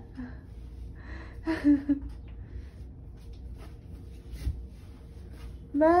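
A brief breathy voice sound, a gasp or soft laugh, about one and a half seconds in, then low room noise with faint ticks and rustles and a soft thump a little after the middle.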